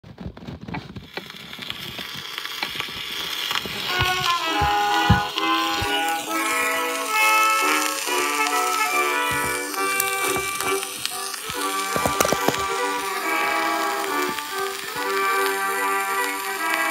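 Instrumental introduction of an early acoustic phonograph recording from 1910, a run of melodic notes over a steady background of surface hiss and crackle. It starts faint and noisy and grows louder over the first few seconds.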